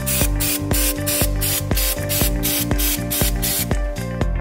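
An aerosol can of all-purpose cleaning spray hissing in a continuous jet onto the fuel filter's line fittings. The hiss eases shortly before the end.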